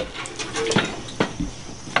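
A few light metallic knocks and clinks from a long steel burner pilot tube being handled and set onto a metal stand, over a steady hiss.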